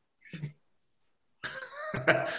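A short, cough-like vocal sound about a third of a second in, then people starting to laugh near the end, heard through video-call audio.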